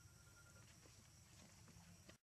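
Near silence: faint outdoor ambience with a steady high insect drone and a few faint clicks.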